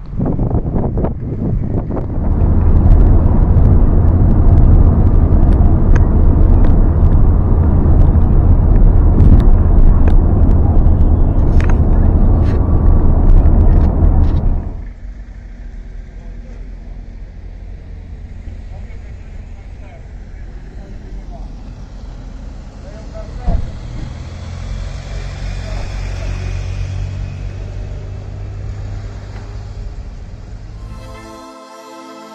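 Loud, rumbling wind buffeting the microphone outdoors for about the first half, cutting off suddenly. It gives way to a much quieter low, steady hum with faint voices and a single click.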